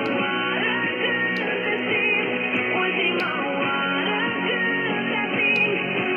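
Guitar-led music playing from a DRM digital shortwave radio receiving Radio Romania International on 9490 kHz, dull with no treble. Three faint ticks are heard over it.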